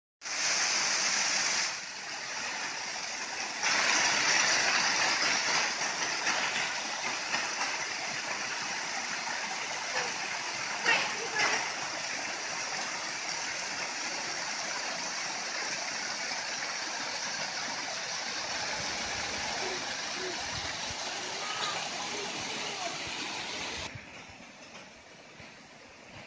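Waterfall: water pouring over a rock ledge and splashing into the pool below, a steady rushing hiss. It jumps in loudness a few times and drops to a quieter, more distant rush near the end.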